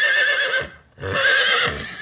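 A horse whinnying twice, each call about a second long with a quavering, wavering pitch; the first call fades out just before the second begins about a second in.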